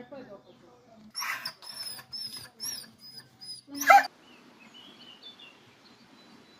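A dog barking, about six sharp barks over three seconds, the last one much louder than the rest. After it come a few faint bird chirps.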